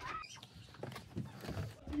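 A wooden door being unlatched and pushed open: a short squeak at the start, then faint clicks and knocks from the handle and door.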